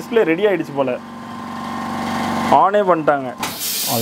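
TV panel repair machine running with a steady hum that grows louder for about a second and a half, then a short hiss near the end.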